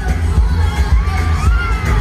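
Arena concert crowd screaming and cheering over loud live pop music with a heavy bass beat.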